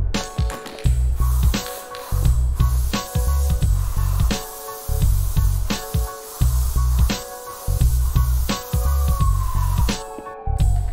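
Upbeat background music with a heavy, regular bass beat, with a steady hiss of aerosol spray-paint cans underneath. A falling tone glides down near the end.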